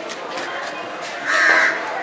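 A crow cawing once, loud and short, about a second and a half in, over a background of voices.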